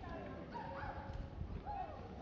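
Outdoor ambience of distant people talking, with the soft footsteps of someone walking.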